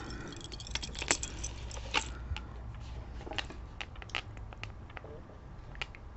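Metal chain necklace with textured metal plates clinking and jingling lightly as it is handled and hung up, a cluster of small clicks in the first two seconds, then scattered ticks.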